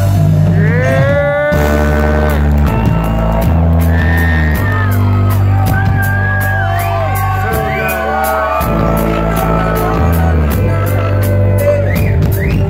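Live rock band playing on stage with electric guitar, bass guitar and drum kit: a steady beat of cymbal ticks, a deep bass line changing notes every second or so, and a bending lead melody on top. Heard loud from within the audience.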